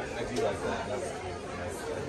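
Indistinct background chatter of many people talking at once, a low steady murmur with no single voice standing out.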